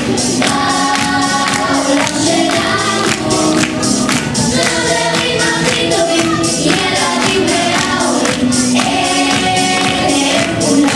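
A children's choir sings an upbeat pop song into microphones, over musical accompaniment with a steady beat.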